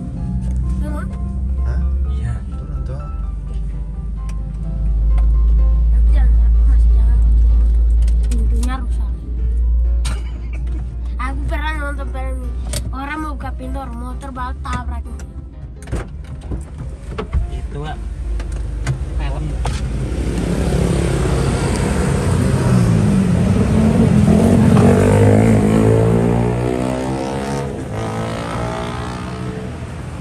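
A car's low engine and road rumble inside the cabin, with music and voices over it. About twenty seconds in, a loud passing motor vehicle swells and fades away.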